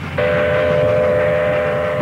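Steam locomotive whistle sounding one long steady blast, two close tones together.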